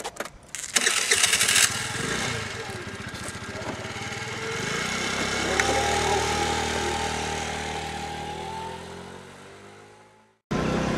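Small moped scooter engine started with a loud burst about a second in, then running and pulling away, growing louder and then fading steadily as it rides off into the distance.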